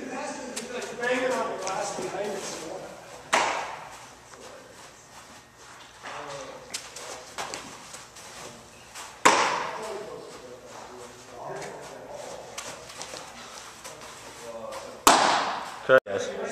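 Sharp smacks of a baseball, about every six seconds, each ringing briefly in a large indoor room, with a second smack close behind the third near the end.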